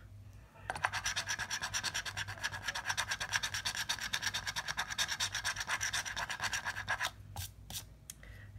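A coin scratching the coating off a scratch-off lottery ticket in rapid, even back-and-forth strokes for about six seconds, then stopping, with a couple of light clicks near the end.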